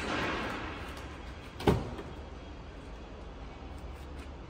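A single solid car-door thunk about a second and a half in, over the steady low hum of a parking garage.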